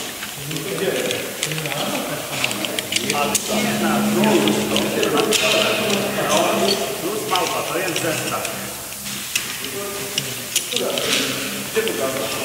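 Metal rope-access hardware being handled: carabiners and devices clicking and clinking in short, irregular taps, with rope and harness rustling. Indistinct voices run underneath.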